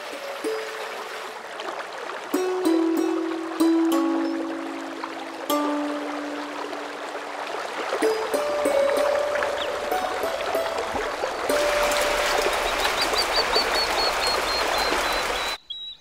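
Rushing water of a large waterfall and river, a steady noise that swells much louder in the second half, under soft instrumental music of slow held notes. A quick series of high chirps sounds near the end, and everything cuts off abruptly just before the close.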